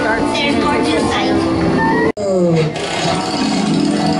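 A dark ride's show soundtrack: a recorded voice over music and effects. About two seconds in, the sound cuts off abruptly, then resumes with different audio that has sliding tones.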